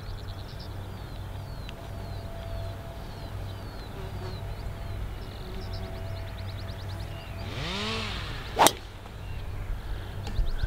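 Golf driver swung at a teed ball: a short whoosh of the downswing, then, about eight and a half seconds in, one sharp crack as the clubface strikes the ball.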